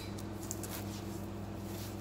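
Quiet room tone: a steady low hum, with a couple of faint soft ticks about half a second in.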